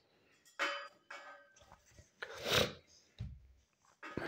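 Quiet handling of a beer glass and bottle: a light glassy clink about half a second in that rings briefly, then a short scuffing noise and a soft low thump near the end.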